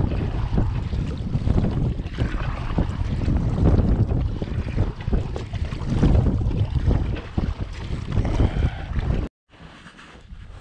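Wind buffeting the microphone in a steady headwind, over the splashing of a kayak paddle dipping into choppy water in uneven surges. It cuts off suddenly near the end.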